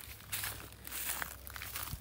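Footsteps on dry grass and hay-strewn ground, with light irregular crackling and scuffing, over a low steady rumble.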